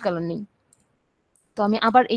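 A voice speaking, breaking off about half a second in and starting again about a second later. The gap between is near silent apart from two faint clicks.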